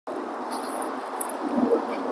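Steady outdoor background noise, an even hiss, with a few faint high chirps about half a second in.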